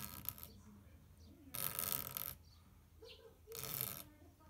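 Snap-off utility knife blade scoring a clear plastic sheet along a steel ruler: three scraping strokes, each under a second, about every one and a half to two seconds.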